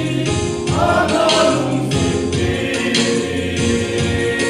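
A group of men singing a Christian gospel song together, with instrumental backing underneath.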